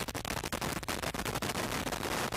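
Proton rocket's six first-stage engines climbing after liftoff: a steady rushing noise packed with rapid crackles.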